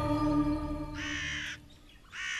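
Held, eerie soundtrack tones fading away, and about a second in a single harsh bird call lasting about half a second.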